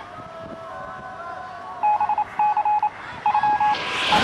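Distant shouting voices in the first couple of seconds, then three quick runs of loud, single-pitched electronic beeps. A rising whoosh from the station's closing sting begins near the end.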